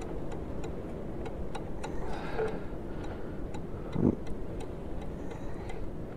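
Wrench working a nut on a sawmill's steel frame: faint, irregular metal clicks, with a dull knock about four seconds in.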